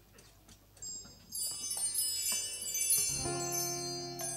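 Small metal bar chimes shimmering in a run of many high ringing notes, starting about a second in, with an acoustic guitar chord struck near the end and ringing on beneath them.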